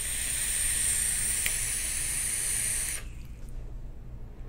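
A long draw on an electronic cigarette: a steady hiss of air pulled through the atomizer as the coil fires, lasting about three seconds and then stopping abruptly.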